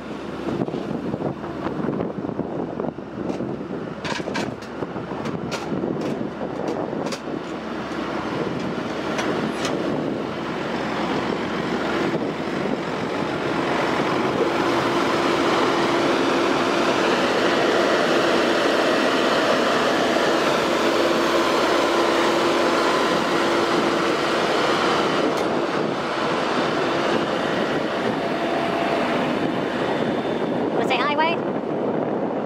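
Heavy diesel tow-truck engine running with a steady rumble, with a few sharp clicks in the first third. A steady whine joins in about halfway through and stops a few seconds before the end.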